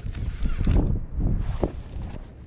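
Wind buffeting the camera microphone: a gusty low rumble with a few brief rustles in the first second, easing off near the end.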